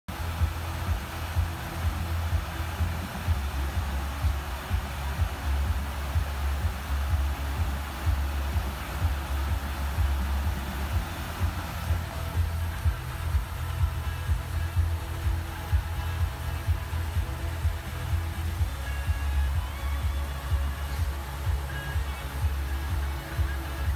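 Music with a heavy, steady bass beat.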